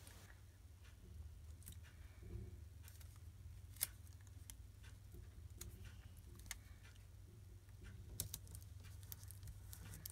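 Near silence: a steady low hum with a few faint, short clicks and taps scattered through it.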